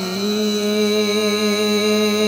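Qawwali singing: one long note held steady with a slight waver in pitch, over a steady harmonium drone.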